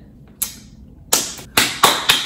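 A person clapping her hands: a faint first clap about half a second in, then three sharper claps coming closer together near the end.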